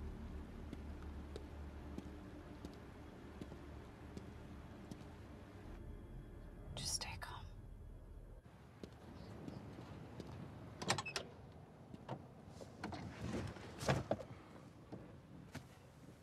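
Film soundtrack with a low steady hum for the first several seconds, a sharp swish about seven seconds in, then a run of short clicks and knocks: a car door being opened and handled as someone gets into an old car.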